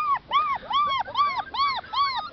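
Six-and-a-half-week-old Border Collie puppy whining in a run of short, high-pitched cries, about three a second, each rising and falling in pitch.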